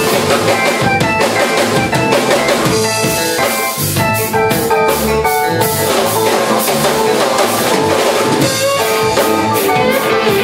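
Live band playing an instrumental passage: drum kit hits over electric bass and Korg keyboard.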